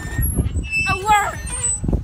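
Metal swing chains squeaking with each swing of the seat, a high, bending squeal about once a second, over a low rumble of wind on the microphone.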